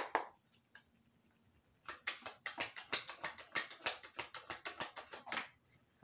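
Oracle card deck being shuffled by hand: a quick run of card slaps, about seven a second, starting about two seconds in and lasting some three and a half seconds.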